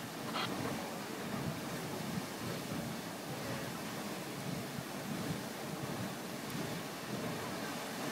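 Grand Geyser erupting: a steady, even rushing of water and steam, much like surf.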